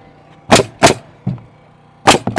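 Pneumatic framing nailer firing: two sharp shots about a third of a second apart, then a fainter knock, as nails are driven through the raised wall's bottom plate to fasten it down.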